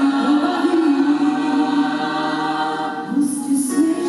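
Female lead singer singing into a handheld microphone over a women's choir holding sustained harmonies.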